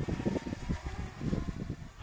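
Breeze buffeting the microphone in uneven low rumbling gusts.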